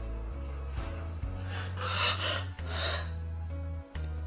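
Slow background music of held low chords, with a person crying in gasping, sobbing breaths about halfway through.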